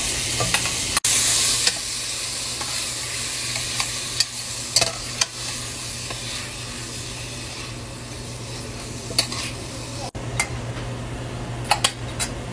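Shrimp sizzling as they fry in oil in a stainless steel pan, with a louder surge of sizzle about a second in. A utensil clicks and scrapes against the pan now and then as the shrimp are stirred, over a steady low hum.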